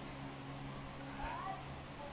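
A single short, high vocal squeak that rises and then falls in pitch, about a second and a half in, over a steady low hum.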